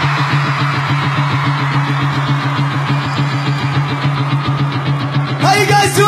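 A sustained low drone note under a dense crackling rumble, held steady. Near the end a loud, shouted voice cuts in, rising and falling in pitch.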